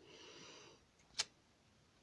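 Faint handling of tarot cards as one is drawn from the deck: a brief soft rustle, then a single sharp click a little over a second in.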